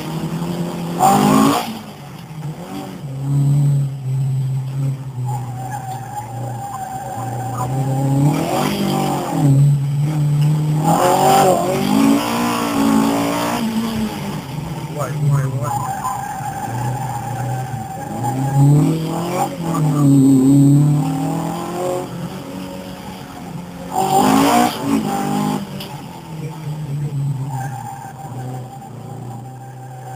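Alfa Romeo Giulia Super's freshly rebuilt twin-cam four-cylinder racing engine heard from inside the cabin, revving up and dropping back again and again through tight turns. Tyres squeal with a held high tone in several of the corners.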